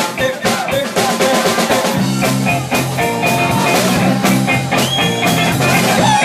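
A live rock band playing: drum kit strikes dominate the first two seconds, then a bass guitar and electric guitar take over with a repeating low riff and guitar lines over it.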